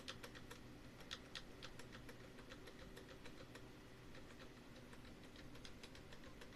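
Computer keyboard key tapped over and over, about three to four faint clicks a second: F11 being hit repeatedly during start-up to call up the boot menu.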